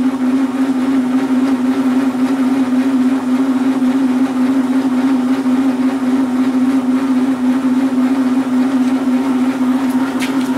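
Belt-driven test rig of a homemade generator, a washing-machine-type stator in a trailer drum hub, running steadily at about 400 RPM under load from grid-tie inverters. A loud, steady howl with one strong hum tone that holds constant.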